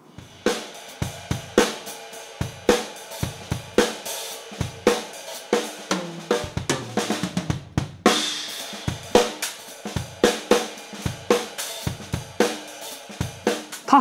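Acoustic acrylic-shell drum kit played in a steady groove of snare, bass drum, hi-hat and cymbals, with a cymbal crash about eight seconds in. It is a raw recording from wireless microphones with no effects or post-processing, sounding very real but not particularly nice to listen to.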